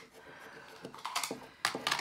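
A coin scraping the scratch-off coating of a paper lottery scratchcard: a few short, light scrapes and clicks, busiest in the second half.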